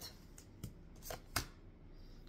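Tarot cards handled in the hands: three short card clicks, the loudest a little after the middle.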